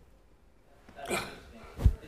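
Near quiet room tone, then a man's voice says a short word about a second in, followed just before the end by a single sharp, low thump.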